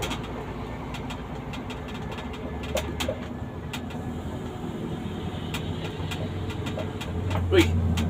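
Vehicle engine and road noise heard from inside the cab while driving: a steady low drone that grows louder about two and a half seconds in and again near the end.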